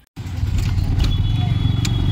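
Busy street traffic noise, cutting in suddenly: a heavy low rumble of road vehicles, with a few sharp clicks and a high steady whine that comes in about a second in.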